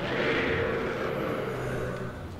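Soundtrack of a tokusatsu TV episode: a sustained, noisy sound effect over a low steady hum, dropping away at the end as the scene changes.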